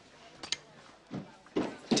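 A single short, sharp click about half a second in and a dull thump a little after a second, then a man starts speaking near the end.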